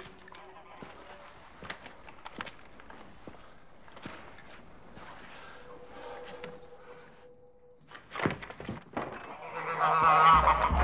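Domestic geese honking near the end, after a quiet, tense stretch of faint scattered clicks and a steady held tone.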